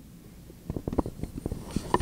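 Handling noise from a handheld microphone being passed from one person to another: a quick run of knocks and rubbing on the mic that starts about half a second in.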